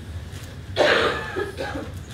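A person coughing: one loud cough about a second in, then a smaller one, over a low steady room hum.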